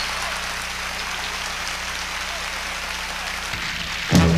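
Concert audience applauding and cheering, a dense even clatter of many hands, with a low steady hum underneath.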